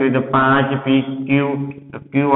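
A man's voice speaking in a drawn-out, sing-song way, with a short pause near the end.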